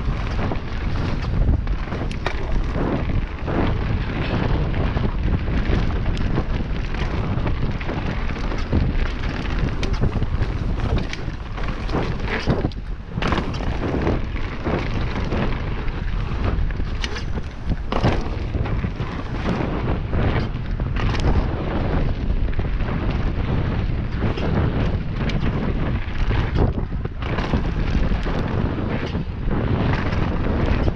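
Wind buffeting the microphone on a fast mountain-bike run, with tyres rolling over a hard-packed dirt trail. Frequent short knocks and rattles come through as the bike goes over bumps.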